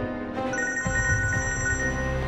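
Smartphone ringtone ringing for an incoming call. A repeating high-pitched phrase starts again about half a second in and stops near the end.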